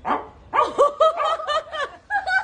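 A quick run of short, high barks, about seven in a row, starting about half a second in.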